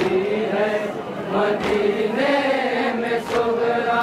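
A group of men chanting an Urdu noha (mourning lament) in unison, long wavering sung lines, with sharp slaps from chest-beating (matam) roughly every one and a half to two seconds.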